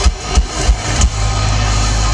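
Live heavy metal band playing through a large concert PA, with distorted electric guitars and a drum kit. A few sharp drum hits come first, and a little after a second in a heavy, low, held chord takes over.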